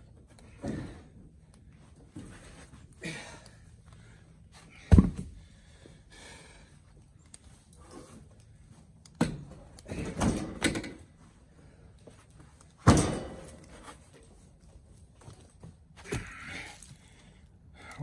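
Heavy oak firewood blocks thudding and knocking as they are dragged across a pickup bed with a hookaroon and dropped down. There are several separate knocks, the sharpest about five seconds in and again a little past halfway.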